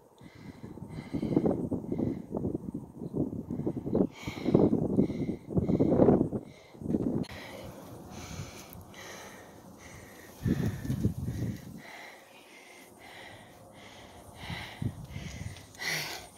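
A person breathing hard in uneven bursts, with quieter pauses between them.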